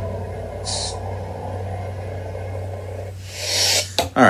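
A lit neopixel lightsaber's sound-board hum, a steady low drone, with a short hiss about a second in. Near the end a louder hiss comes as the hum cuts out, the saber being switched off.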